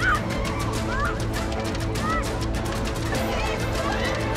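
A crowd of people shouting and yelling in a scuffle: short, overlapping shouts rising and falling in pitch, over a steady low background.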